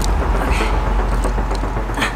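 Wind buffeting the camera's microphone outdoors: a steady, loud low rumble with a hiss of noise above it.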